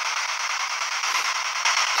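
A steady hiss of static with no tones or voices in it.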